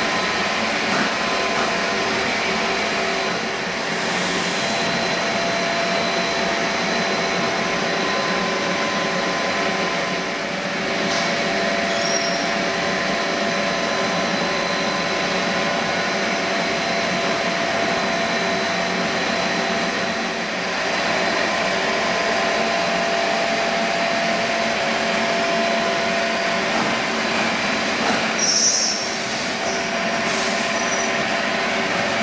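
Plastic pipe extrusion line machinery running: a steady mechanical hum and hiss with several held tones, briefly dipping in level a few times. A short high-pitched squeal comes near the end.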